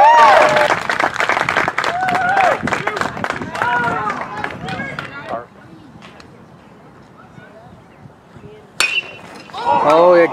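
Spectators' voices shouting and talking for the first half, then a quiet lull. Near the end a metal baseball bat strikes a pitched ball once, a sharp ping with a brief ring, on a two-run home run, and spectators start shouting right after.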